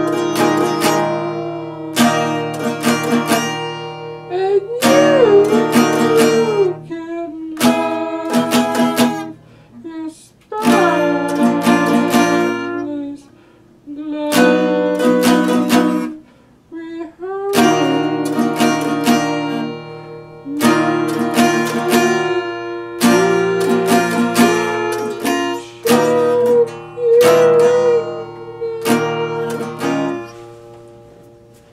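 Small-bodied acoustic guitar played in slow strummed chords that ring out and fade between strokes, with a man singing over some of them.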